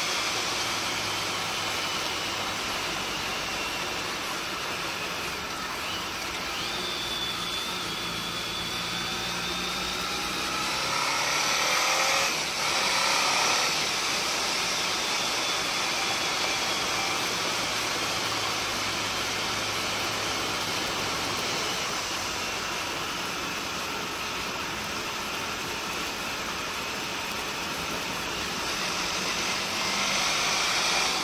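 Wind rushing over a helmet-mounted camera while a Honda ST1300 Pan European's V4 engine runs underneath at a steady road speed of about 60–80 km/h. About twelve seconds in, the sound briefly grows louder, with tones sliding down in pitch.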